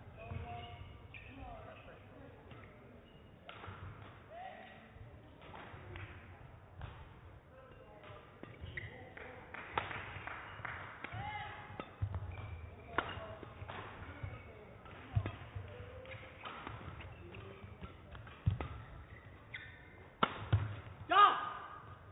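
Badminton rally: the shuttlecock is struck back and forth with rackets, sharp cracks about a second or so apart, while players' shoes squeak on the court mat.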